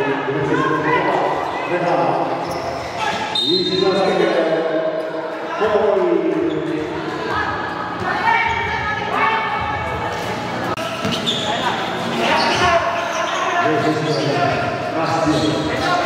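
Live basketball game sound in an echoing gym hall: a basketball bouncing on the court with players and spectators calling and shouting throughout. A brief high-pitched squeal comes a little over three seconds in.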